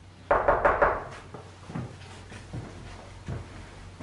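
Rapid run of loud knocks on a flat's front door, lasting about a second, followed by a few fainter thumps.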